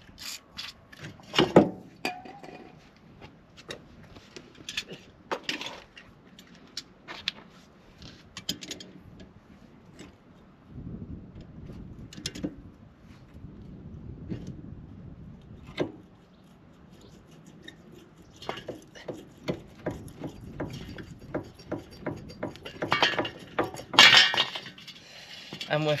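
Pliers clicking and scraping on a stuck ABS sensor and the steel brake backplate of a Ford Fiesta's rear hub as the sensor is wiggled to work it loose. The metallic clinks come irregularly, with the loudest cluster near the end.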